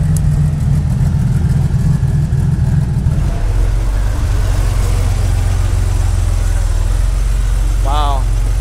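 Air-cooled Porsche 911 flat-six engines running at low speed as two cars roll past in turn. About three seconds in, the first car's louder, fuller engine sound gives way to a steady lower rumble from a 964 Turbo 3.6.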